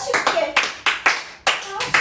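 A small group of people clapping their hands, a quick, uneven run of about five claps a second.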